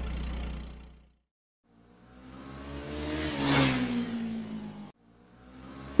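A low engine hum fades out within the first second. After a short silence, a motor vehicle engine sound swells, peaks and passes by with falling pitch, then cuts off suddenly about five seconds in.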